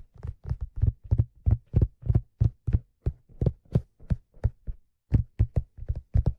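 Fingertips tapping on a black leather fedora close to the microphone: a quick, uneven run of dull taps, about three to four a second, with a brief pause near the end.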